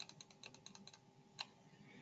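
Faint computer keyboard typing: a quick run of key clicks that stops about a second in, followed by one sharper single click.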